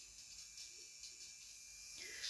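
Near silence: room tone with a faint, steady, high-pitched hum.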